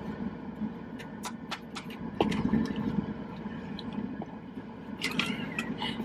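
Hands handling a mask: scattered light clicks and scrapes over a low steady hum.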